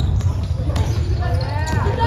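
A basketball bouncing on a wooden gym floor during play, with a voice calling out in the second half.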